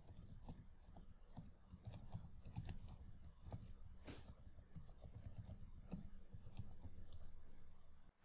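Faint, rapid typing on a computer keyboard, the keystrokes coming in quick irregular runs over a low hum.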